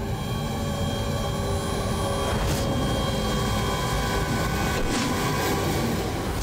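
A steady rushing noise with sustained tones held over it: a dramatic sound effect from a TV serial's soundtrack. There are short swells about two and a half and five seconds in.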